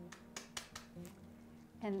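Hard-boiled eggshell crackling in a few light clicks in the first second or so as the egg is rolled on a plastic cutting board, breaking the shell and loosening its membrane for easy peeling.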